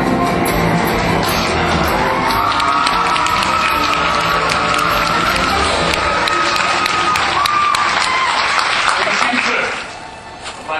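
Live theatre orchestra playing the opening music of a stage musical, recorded from the house: a loud, dense sound with long held high notes over it. It cuts off sharply just before the end.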